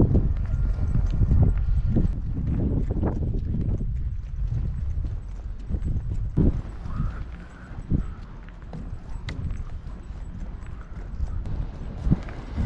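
Footsteps on a wooden footbridge deck, a thud every half second or so, over low wind rumble on the microphone.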